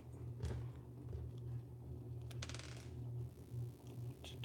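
Faint clicks and a short rattle of small plastic LEGO pieces being handled and fitted together, the rattle about two and a half seconds in, over a steady low hum.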